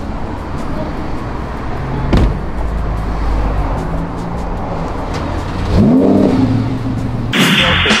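Lamborghini Huracán V10 engine running, revved up and back down once about six seconds in. Near the end a burst of static-like glitch noise cuts in.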